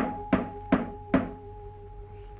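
Four sharp knocks in quick succession, about two and a half a second, over a single held musical note on the cartoon soundtrack.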